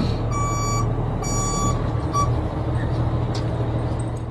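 Heavy truck's reversing alarm beeping twice, about a second apart, with a short third beep near the two-second mark, over the steady low running of the truck's diesel engine as the rig backs up with its lowboy trailer.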